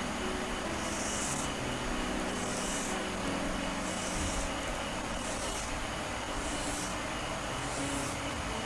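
Whiteboard marker drawn across a whiteboard in repeated horizontal strokes, a short scratchy rasp about every second and a quarter, six in all, over a steady background hiss.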